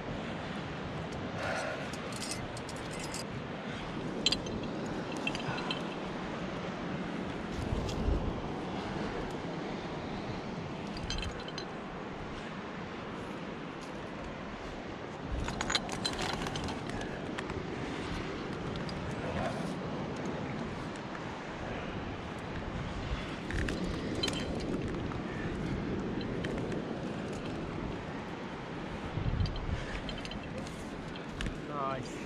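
Metal climbing gear (carabiners and quickdraws) clinking now and then as the climber moves up the rock, with a handful of sharp clinks over a steady low rush of movement and air on the microphone.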